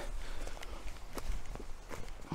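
Footsteps of a person walking, a few steps, picked up close by the wireless clip-on microphone he is wearing.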